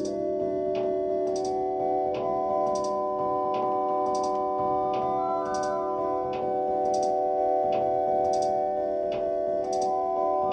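Live electronic music from a modular synthesizer and drum machine: a held cluster of synth tones in a scale loosely based on gamelan pelog, over a steady high ticking pulse of about one and a half ticks a second. Higher notes step in around the middle.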